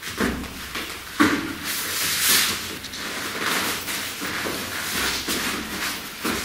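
Rustling and scuffing of clothing and bodies as two men grapple in an arm-lock hold, with a sharp knock about a second in.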